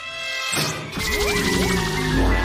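Cartoon sound effects over music: a steady electronic buzzing tone as the button is pressed, then about a second in a crash with a low rumble and rising zaps as a trap of glowing energy bars springs shut.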